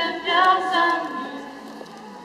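A crowd singing a Polish hymn together, unaccompanied, louder in the first second and then fading.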